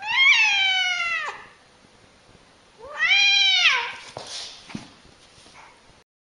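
Domestic cat giving two long, drawn-out meows about three seconds apart, each rising and then falling in pitch, with a few faint knocks after the second.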